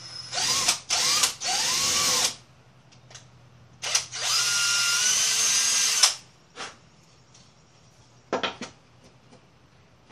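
Cordless drill with a quarter-inch bit boring a hole through a wooden yardstick: three short bursts of the motor winding up in the first two seconds, then a longer steady run of about two seconds in the middle. A few brief clicks follow near the end.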